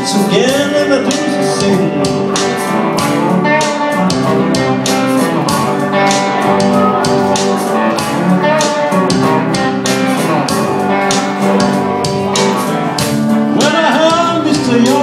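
Live blues played on electric guitars with a steady beat.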